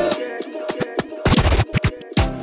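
DJ turntable scratching in a mix transition between Afrobeat tracks. The bass drops out and the music thins, then a run of quick scratches fills the second half.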